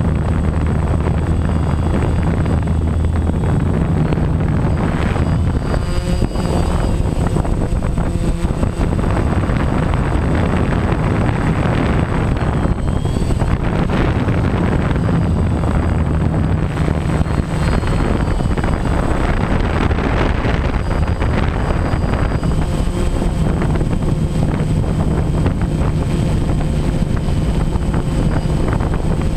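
DJI Phantom 1 quadcopter's motors and propellers running in flight, heard from the camera on the drone itself: a steady loud drone mixed with wind rushing over the microphone. The low hum shifts in pitch now and then as the motors change speed.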